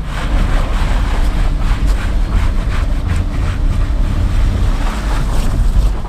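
A 2006 Land Rover LR3's 4.4-litre naturally aspirated V8 runs under throttle in low range while the truck crawls up a rock step, with scattered crunches from the rock. A heavy wind rumble on the microphone runs under it.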